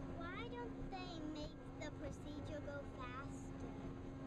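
Indistinct voices in snatches over a steady low mechanical hum.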